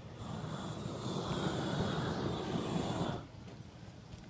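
Pressure washer spraying water, a loud rushing hiss with a steady high whine, cutting off suddenly about three seconds in.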